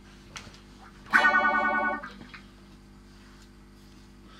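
White Stratocaster-style electric guitar through a distorted amplifier: one chord struck about a second in rings loudly and wavers for under a second, then is cut off. A steady low hum runs underneath.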